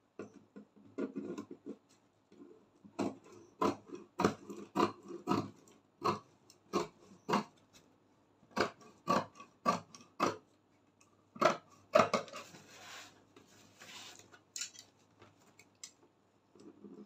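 Large tailor's shears cutting a paper pattern: a run of crisp snips at about two a second, with a short pause midway, followed by paper rustling near the end.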